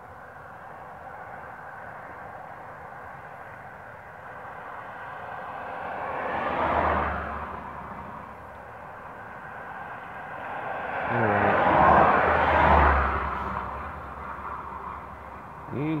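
Two road vehicles passing by, each a rising and fading rush of tyre and engine noise with a low rumble: one about seven seconds in, and a louder, longer one around twelve seconds.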